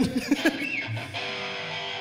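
Electric guitar played idly: a few single plucked notes, then a chord struck about halfway in and left ringing.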